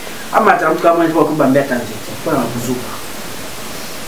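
A man's voice speaking for about two seconds, then a pause with only a steady background hiss.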